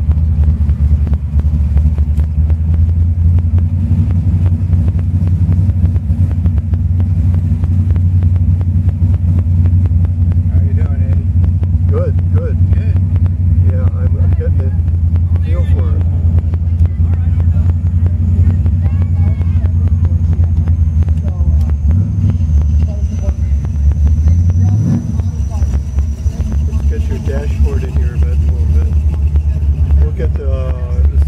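The engine of a hot-rodded 1967 Oldsmobile Cutlass convertible running steadily as the car cruises slowly in traffic, heard from inside the car. A couple of short revs come in the last third.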